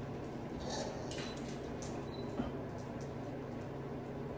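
Ceiling-mounted electric shop heater running with a steady low hum from its fan, with a few light clicks near the middle.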